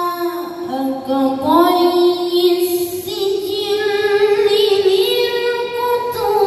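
A male voice reciting the Quran in the melodic tilawah style over a PA system, holding long notes and sliding between pitches, with a short pause for breath near the start before a new phrase rises.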